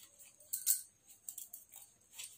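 A few faint, short clicks and scratches, the loudest about two-thirds of a second in, from a hand wearing bangles moving a pen into place over paper on a clipboard.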